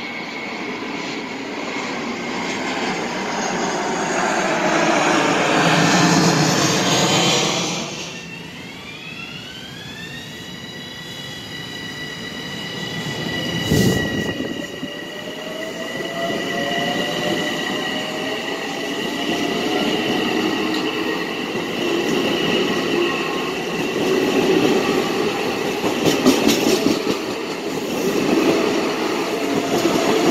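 Long Island Rail Road M7 electric multiple-unit train running alongside the platform: a swelling rumble with wheel squeal that drops off suddenly about eight seconds in. An electric motor whine then rises in pitch and settles into steady high tones, with one sharp clunk about halfway through and rumbling and clattering wheels near the end.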